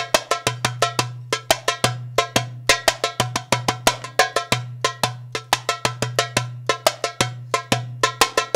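A darbuka (goblet drum) played solo: a fast, dense rhythm of sharp, crisp high strokes at the rim, with a deep bass tone from the centre of the head ringing on underneath.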